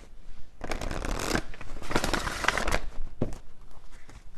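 A deck of tarot cards being shuffled by hand: two spells of papery rustling and card slaps, followed by a single tap near the end.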